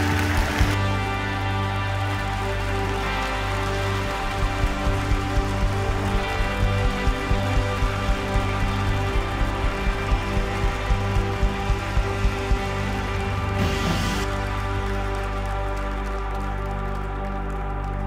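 Live worship band playing soft, slow music of sustained chords over a steady low bass. A regular low beat, about two a second, comes in about four seconds in and stops some eight seconds later.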